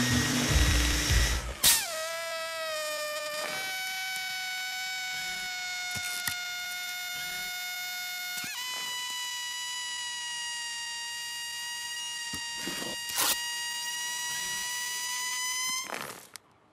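Air leaking from a small puncture in the inflatable robot Baymax's vinyl body, a film sound effect: a burst of hissing, then a steady high-pitched whistle that steps up in pitch twice.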